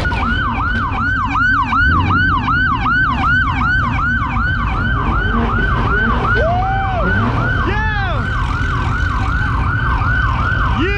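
Police car siren on a fast yelp, rapid falling sweeps about three a second, with a few separate rise-and-fall whoops from a second siren a little past the middle.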